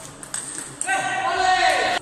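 Table tennis ball clicking off bats and table in a rally, followed by a loud, high-pitched sustained sound about a second long that dips in pitch and cuts off abruptly.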